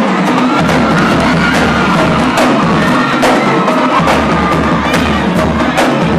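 Marching drumline of snare drums and a bass drum playing a fast cadence, with a crowd cheering and shouting over the drums.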